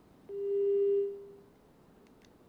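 A single steady electronic beep tone, starting abruptly and fading out after about a second.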